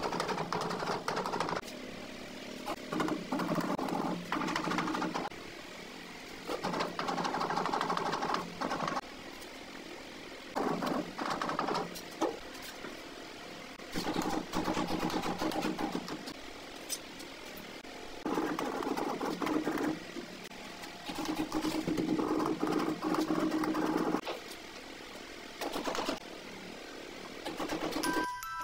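Ceramic wall tiles being pressed and rubbed back and forth into cement mortar by hand: a gritty scraping in repeated bursts of one to three seconds, with scattered sharp taps and knocks between them.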